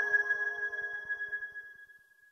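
The closing note of a song: a single struck bell-like chime ringing and fading away, dying out about two seconds in.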